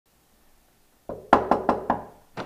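Knuckles knocking on a door: five quick raps starting about a second in, the first one softer.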